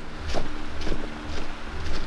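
Steady rush of a brook's running water, mixed with footsteps through dry leaf litter and wind rumble on the microphone.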